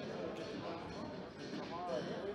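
Ball being kicked and bouncing on a sports-hall floor during an indoor five-a-side football game, with players' voices echoing in the hall.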